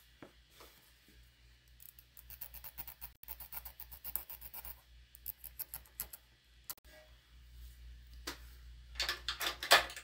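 A chalk marker pen scratching quick strokes on fabric: a run of rapid scratches a couple of seconds in, then a shorter run, with some louder fabric rustling near the end.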